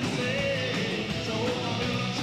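Southern rock band playing live: electric guitars, bass guitar and drum kit together.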